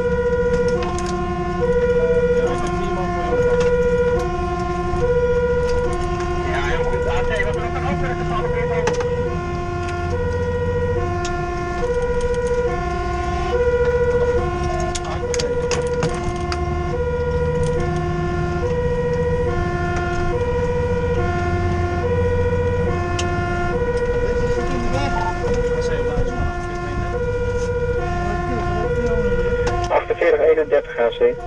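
Fire engine's two-tone siren alternating high and low, one full cycle about every one and a half seconds, heard from inside the cab over the truck's engine rumble.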